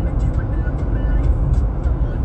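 Steady low rumble of a car heard from inside the cabin, the hum of the engine and road noise.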